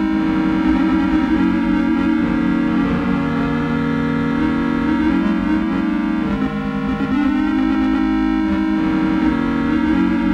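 Electronic music played on an Atari 800XL home computer: sustained low synthetic tones held under a shifting pattern of thinner, steady higher notes.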